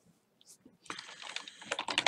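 Computer keyboard being typed on, a quick run of key clicks starting about a second in.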